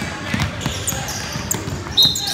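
Basketball dribbled on a hardwood gym floor, a run of irregular knocks, over crowd chatter in a large hall, with a few short high squeaks about halfway through.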